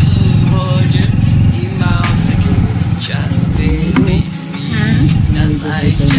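Motorcycle riding noise, a steady low rumble of engine and wind on the rider's microphone that dips briefly a little after the middle, under a pop song with a singing voice.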